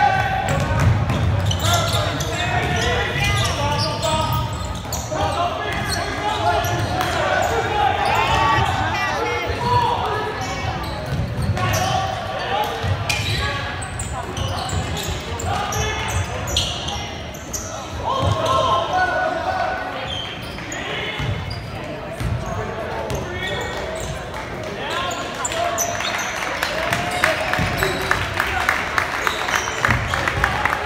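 Gymnasium crowd and players calling and shouting during a basketball game, with a basketball bouncing on the hardwood floor, all echoing in a large hall. Near the end comes a run of quick, even taps.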